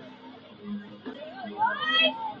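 Murmur of spectators' voices, with one short, high cry that rises sharply in pitch near the end.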